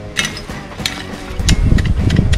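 Several sharp, irregularly spaced metallic clicks from a folding tactical shovel being handled.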